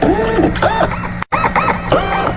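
Electronic intro jingle: synthesized tones warbling up and down in quick arcs over a steady low hum, cutting out for a moment just past a second in.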